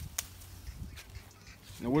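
A basil bush handled and a sprig picked from it, with two sharp clicks at the start over a low wind rumble on the phone microphone; a man's voice starts near the end.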